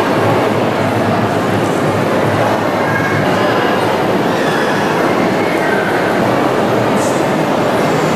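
Loud, steady crowd noise of many voices blending together.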